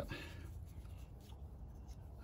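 Faint scratching as a thin metal rod is worked inside the brass tube of a wooden pen cap to push out a small plug.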